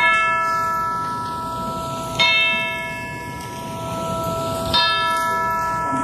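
Chimes struck three times, about two seconds apart, each stroke ringing on with a long decay into the next.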